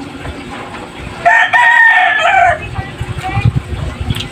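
A rooster crowing once, about a second in, a single call of roughly a second and a half that holds its pitch and then drops at the end.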